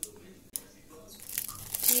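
Plastic wrapper being peeled off a processed cheese slice, crinkling and rustling, getting louder in the second half. Two light clicks come just before it.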